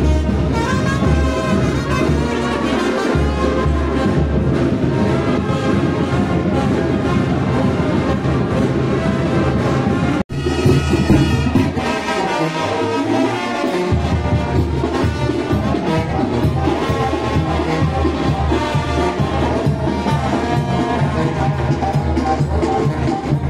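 A brass band playing a lively tune, trumpets over a sousaphone bass. The music drops out for an instant about ten seconds in, then carries on.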